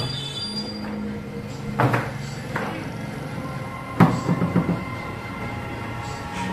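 Hard clacks of a foosball game: the ball struck by the rod-mounted plastic players and knocking against the table, one sharp hit about two seconds in and another about four seconds in, followed by a quick run of smaller knocks.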